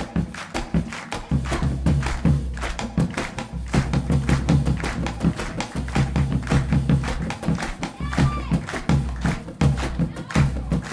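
Live Latin acoustic band music: a nylon-string guitar strummed rhythmically over bass and drums, with hands clapping along to the beat.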